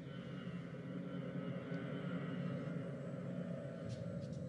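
Low, dark rumbling drone of horror-film sound design, growing slightly louder, with faint higher tones above it and a short click near the end.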